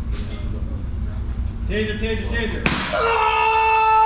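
A TASER fires with one sharp pop about two-thirds of the way in. Right after it comes a man's long, steady yell as he takes the electric shock.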